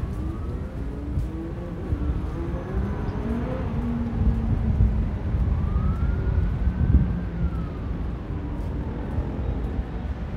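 Distant city traffic and wind on the microphone as a low, uneven rumble, with a siren far off slowly wailing up and down in pitch, at its highest about two thirds of the way through.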